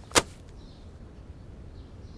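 A single sharp click near the start, over a faint steady background.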